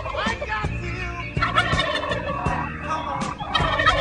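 Turkey-style gobbling, repeated several times over background music with a steady beat.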